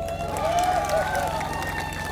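Steady electrical mains hum through a PA sound system, with background voices whose words cannot be made out.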